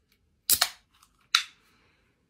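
Pull-tab of an aluminium energy drink can being cracked open: two sharp snaps about a second apart, the second followed by a short hiss.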